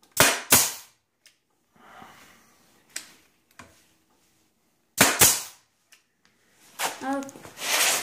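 Nail gun firing two nails in quick succession, then two more about five seconds later, with a few lighter clicks in between.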